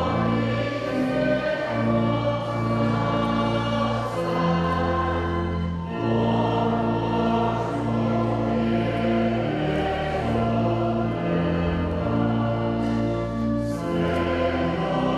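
A hymn sung by many voices in slow, long-held chords, with a short break between phrases about six seconds in.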